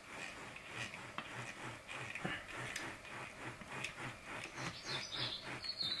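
Riser tube and head of a water deioniser vessel being twisted back and forth and pushed down into dry mixed-bed ion-exchange resin beads: faint, repeated scraping and crackling, a few strokes a second.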